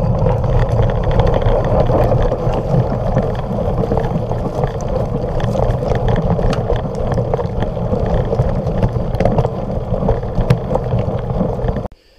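Mountain bike ride over a rough gravel and dirt track heard through a body-mounted action camera: a loud, steady rush of wind and rumble with many small rattling clicks. It cuts off suddenly near the end.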